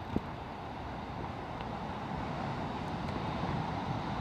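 Heavy surf breaking and churning against black lava rocks, a steady rush of wave noise that swells slightly toward the end.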